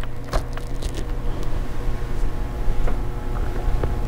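Steady low room hum, with a few faint light clicks.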